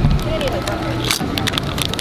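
Kettle-cooked potato chips crunched while being chewed, with a few sharp crunches over crowd chatter. A handling thump comes right at the start.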